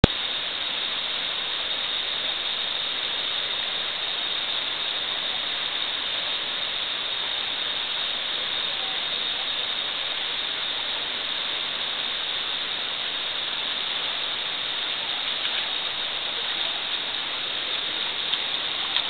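River rapids rushing over boulders: a steady, even noise of whitewater close by.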